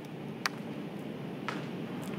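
Steady room tone with two light laptop keystroke clicks, about a second apart.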